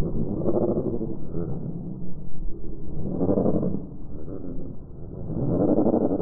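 Field audio from among a flock of black-headed gulls, slowed to a tenth of its speed along with the 240 fps footage, so it plays as a deep, rumbling drone. It swells three times, each swell about a second long: near the start, a little past halfway and near the end.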